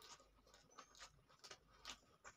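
Faint close-miked eating sounds: a mouthful of chicken pulao being chewed, with about five small, irregular wet clicks across two seconds.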